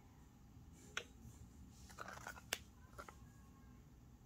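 A few small clicks and taps from handling a small silicone resin mold and craft pieces on the work table, the sharpest about two and a half seconds in, over a faint steady low hum.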